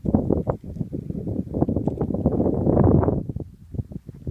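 Wind buffeting the microphone in gusts, loudest about two to three seconds in and easing off near the end.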